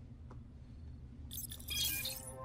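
A brief, high, glassy chiming shimmer with a few ringing tones, starting about a second and a half in, over a low steady hum.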